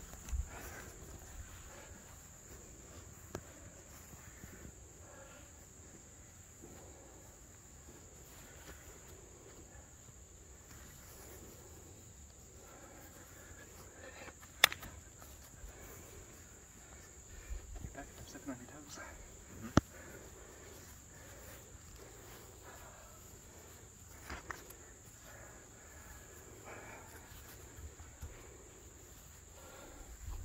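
A steady, high-pitched insect chorus of summer insects, with a few sharp slaps of light-contact strikes landing during sparring. The loudest slap comes about halfway through and another just before twenty seconds in.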